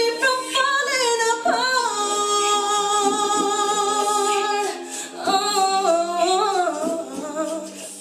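A woman singing solo and live, holding one long note and then moving into melodic runs, her voice fading away near the end as she finishes the song.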